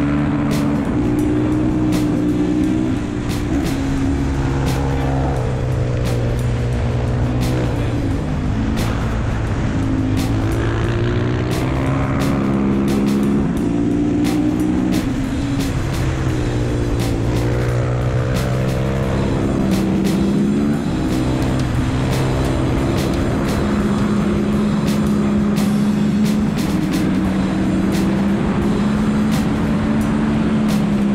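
Husqvarna supermoto's single-cylinder engine running hard on a hill-climb run, its pitch sweeping up under throttle and stepping down with each gear change.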